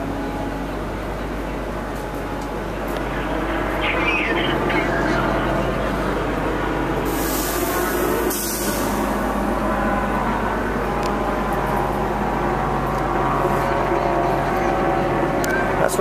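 Road traffic on a busy city boulevard, a steady rumble of passing vehicles, with a brief loud hiss about seven seconds in.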